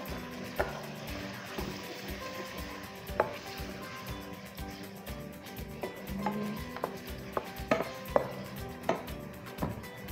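Wooden spoon stirring sliced sausage in a frying pan, scraping through the food with several sharp knocks of the spoon against the pan, more of them in the last few seconds.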